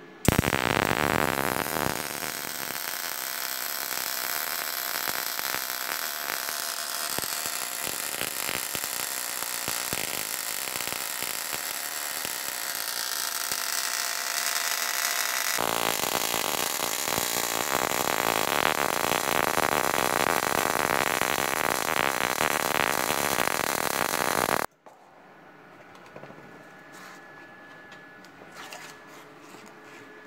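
MIG/MAG welding arc on steel running continuously for about 24 seconds, with the wire feed speed turned up. It starts and cuts off suddenly, and its sound changes a little about two-thirds of the way through.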